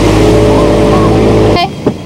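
Motorboat engine running under way, a steady engine note over rushing water and wind. It cuts off suddenly about one and a half seconds in, followed by a click and a brief voice.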